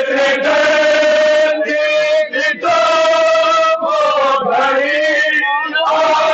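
A group of men loudly chanting a noha, a Shia lament, in unison. Long held notes run in phrases a second or so long, broken by brief gaps.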